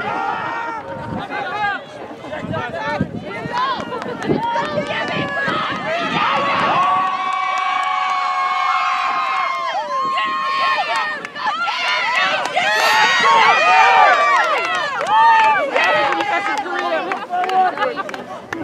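Rugby players and sideline spectators shouting calls across an open field during play, several voices overlapping. A long drawn-out shout is held through the middle, and the loudest burst of overlapping yelling comes a few seconds after it.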